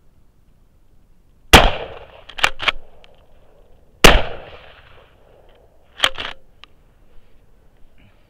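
Two shots from a Remington 870 pump-action shotgun, about two and a half seconds apart, each ringing out with an echo. Each shot is followed about a second or two later by two sharp metallic clacks as the pump action is worked back and forward to chamber the next shell.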